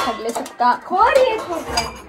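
Steel kitchen vessels and utensils clinking against each other a few times, alongside a woman's voice.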